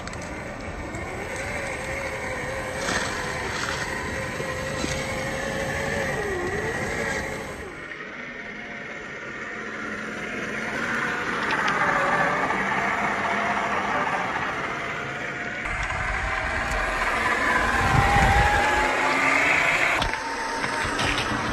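Electric motor and gear drivetrain of a Traxxas TRX-4 RC crawler whining, its pitch rising and dipping with the throttle, with scattered clicks in the first few seconds. The sound changes abruptly about eight seconds in and again near sixteen seconds.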